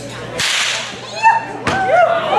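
Long Aperschnalzen folk whip swung overhead and cracked twice, about half a second in and again near the end. Each sharp crack is followed by a short echo.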